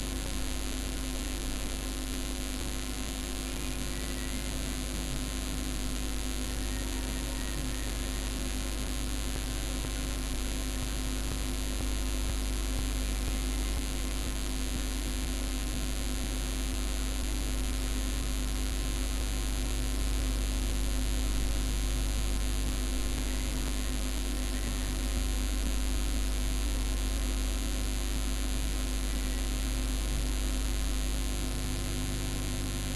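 Steady electrical hum with an even hiss behind it, unchanging throughout: the recording's own background noise.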